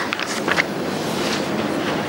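Steady hiss-like background noise with no speech, with a few faint brief sounds about half a second in.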